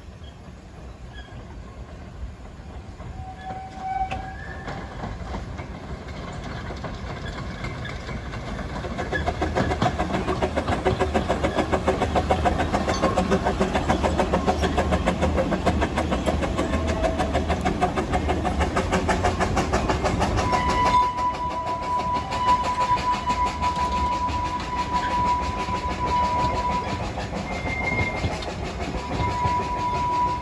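Two narrow-gauge steam locomotives, a green Peckett saddle tank and a blue Quarry Hunslet, working past coupled together. Their exhaust and wheels on the rails swell to a dense, even beat from about a third of the way in. A long, steady, high-pitched tone takes over about two-thirds through, breaks off briefly, then sounds again near the end.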